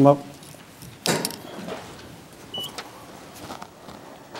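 One sharp thump about a second in, followed by a few fainter clicks and knocks.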